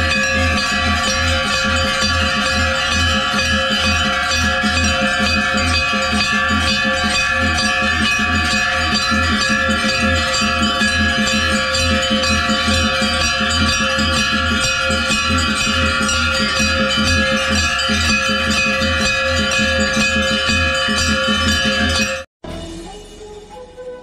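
Many hanging brass temple bells rung by hand at once: a continuous dense clanging with layered ringing tones. Under it runs a steady low beat, about two a second.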